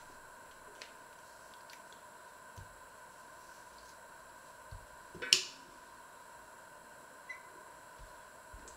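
Plums being cut with a small knife and put into a stainless steel colander: a few faint clicks and soft knocks, with one sharp clatter about five seconds in.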